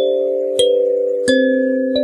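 Kalimba music: plucked metal tines playing a slow tune, a few notes struck together about every two-thirds of a second and left to ring.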